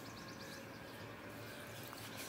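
Faint outdoor background with a bird giving a quick run of high chirps during the first second or so.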